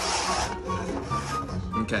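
Red plastic cups being slid and shuffled across a tabletop, a rough rubbing scrape that fades about half a second in, with background music throughout.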